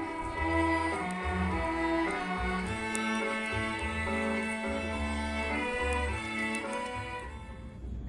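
A children's string ensemble of violins and cellos playing a piece in sustained bowed notes over low cello notes; the music fades out about seven seconds in.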